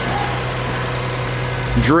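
1998 Lexus ES300's 3.0-litre 24-valve V6 idling steadily with the hood open, running smoothly.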